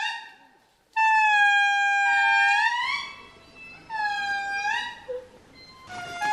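Indri song: several long, loud wailing notes, each held on one pitch and then sliding upward at the end, with two voices overlapping in places and a brief pause near the start.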